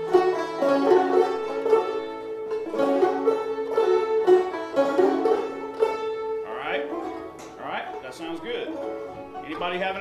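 Five-string open-back banjo playing a Round Peak–style old-time tune for about six seconds, then the playing stops and a voice takes over.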